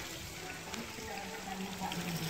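Quiet, steady hiss of running water, with a faint low hum underneath.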